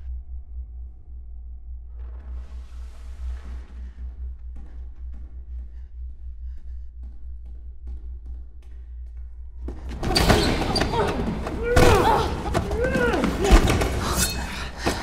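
Film soundtrack with a low, steady drone under faint regular steps. About ten seconds in, a sudden loud struggle breaks out, with a woman's wavering cries and thuds.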